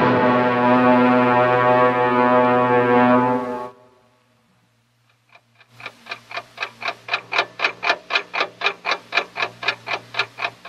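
A held music chord from a radio drama fades out about three and a half seconds in. After a moment of silence, a clock starts ticking fast and evenly, about four ticks a second.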